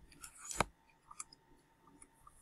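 A brief scraping rustle that ends in a sharp knock about half a second in, then a few light clicks a moment later.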